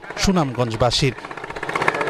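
A motorboat's engine running with a rapid, even knocking beat, under a voice in the first second and on its own in the second half.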